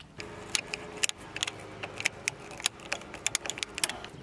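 Irregular sharp metallic clicks and small rattles of hand tools and hardware being handled, several a second, over a faint steady hum.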